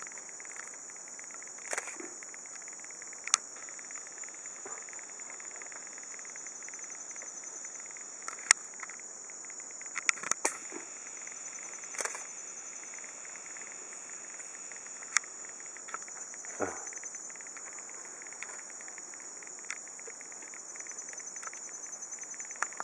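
A steady, high-pitched chorus of night insects trilling, with scattered sharp clicks and knocks from close by.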